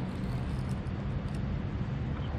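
Steady low hum of road traffic, with faint ticking from a baitcasting reel being cranked as a fish is reeled in.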